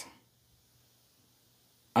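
Near silence: a spoken word trails off at the very start, then almost nothing is heard until speech begins again at the very end.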